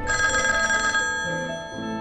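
Old desk telephone bell ringing for about a second and then stopping, over background music.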